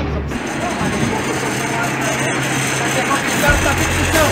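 Steady noise of a running vehicle with faint voices in the background, and a deeper low hum starting near the end.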